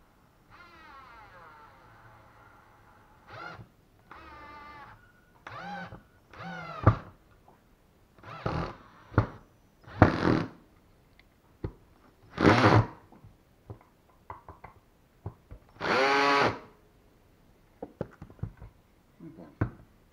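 Cordless drill-driver driving screws into wood in about ten short trigger pulls, the motor's pitch rising and falling within each run.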